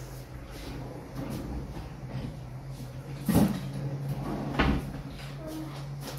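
Two knocks of kitchen cupboard doors being shut, one about three seconds in and a second a little over a second later, over a steady low hum.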